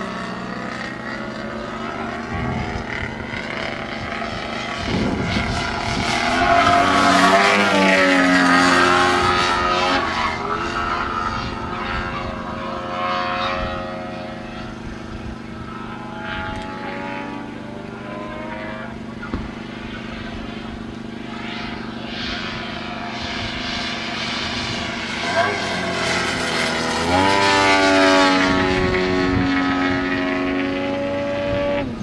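Desert Aircraft DA170 170 cc twin-cylinder two-stroke petrol engine and propeller of a 40% scale Yak 55 model aerobatic plane in flight. The engine note slides up and down in pitch with throttle and passes, growing loudest about seven seconds in and again near the end.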